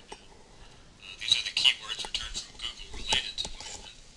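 Faint, thin-sounding speech from a tutorial video playing back through computer speakers, picking up about a second in.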